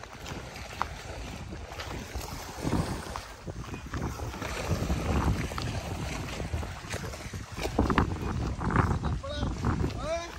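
Wind noise on the microphone over water splashing from a man swimming in a canal, with a voice calling out near the end.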